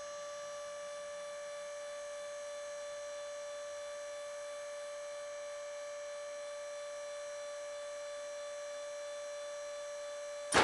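Comil carcass press running with nothing moving: a steady, high-pitched whine with a row of overtones, unchanging throughout.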